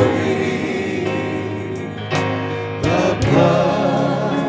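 Live gospel worship song: several voices singing together, with keyboard accompaniment and a few sharp percussive hits.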